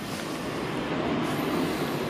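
Steady, even rushing background noise with no clear tones or knocks.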